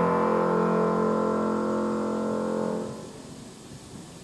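Grand piano holding a chord that rings out and fades away, dying out about three seconds in and leaving quiet room tone.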